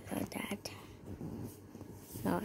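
Soft, half-whispered speech in the first moment, then the faint scratch of a felt-tip marker colouring on paper.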